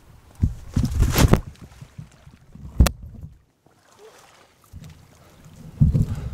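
Water splashing and the camera being jostled as a person falls into a shallow boggy pool. The sound comes in loud rough bursts about a second in and again near the end, with a single sharp click about three seconds in.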